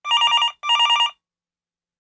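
Electronic telephone ring: two short trilling rings in quick succession, each about half a second long, ending a little past one second in.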